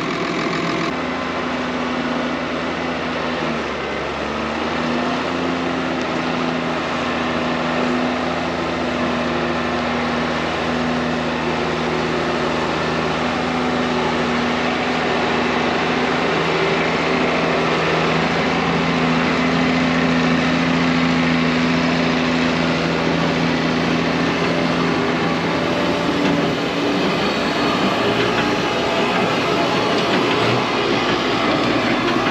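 New Holland T6 tractor engine running under steady load while pulling a forage wagon up a silage clamp. The drone lifts slightly in pitch about four seconds in and drops away near the end, over a continuous mechanical rattle as the wagon discharges chopped grass.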